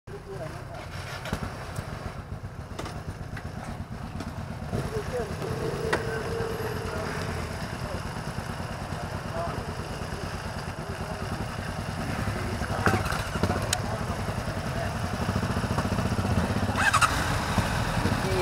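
Motorcycle engines idling together with a low, steady rumble that grows a little louder toward the end.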